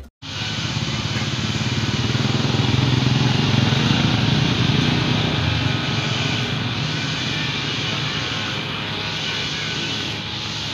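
Steady, loud outdoor rushing noise with a low rumble that swells a few seconds in and then eases, after a brief cut-out at the very start.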